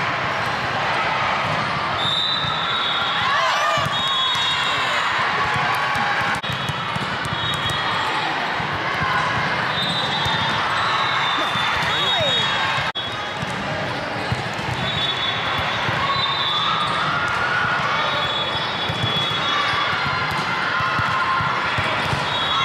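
Din of a busy indoor volleyball hall: many voices of players and spectators, with volleyballs being hit and bouncing on the courts as sharp slaps scattered throughout.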